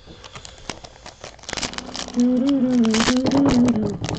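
Foil trading-card pack wrapper crinkling and tearing as it is pulled open by hand. About halfway in, a person hums a short wavering tune over it, louder than the crinkling.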